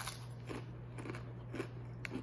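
Doritos tortilla chips being chewed, soft crunches about every half second, over a steady low hum.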